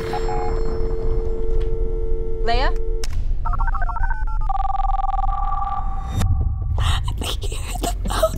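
Telephone line tones: a steady two-note dial tone for about three seconds, a quick rising sweep, then a run of warbling electronic beeps and a held two-note tone, all over a low rumbling drone. A few sharp hits come near the end.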